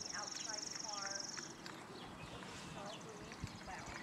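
A horse walking on sand arena footing, its hooves landing in soft thuds, most clearly near the end. A high, rapid trill runs through the first second and a half.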